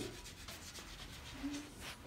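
Faint rubbing and scuffing, with a short low hum about one and a half seconds in.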